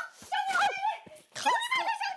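A young woman shouting angrily in Mandarin in a high, strained voice during a physical scuffle with another woman.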